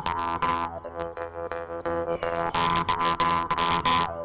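Jaw harp (mouth harp) being played, plucked several times a second over a steady low drone, with the mouth shaping a melody of bright overtones above it.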